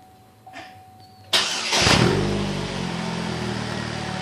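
Saturn Sky's 2.4-litre four-cylinder engine with its stock exhaust being started about a second and a half in: a brief crank, then it catches, flares up and settles into a steady idle.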